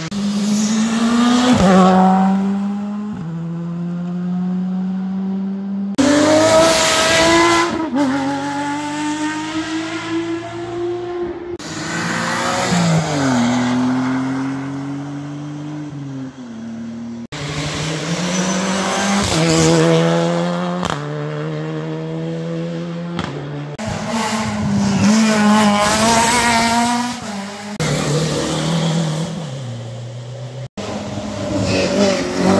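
Rally car engines revving hard under full acceleration, the pitch climbing through each gear, dropping sharply at each upshift, then falling away as the car goes past. Several passes follow one another with abrupt cuts between them.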